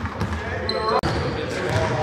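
Basketballs bouncing on a gym's wooden court, with players' voices echoing in the hall.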